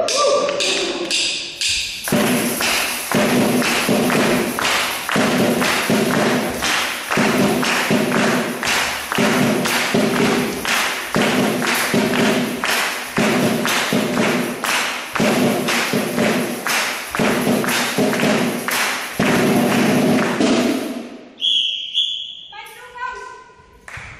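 A drum played in a steady, fast rhythm, several strokes a second with a heavier beat about once a second, as dance accompaniment. It starts about two seconds in and stops shortly before the end, followed by a short high tone.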